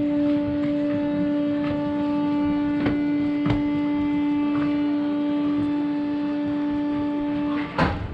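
Train locomotive horn sounding one long, steady blast of nearly eight seconds as the train starts to pull away from the platform. Two sharp knocks come midway, and a loud clunk comes just as the horn cuts off near the end.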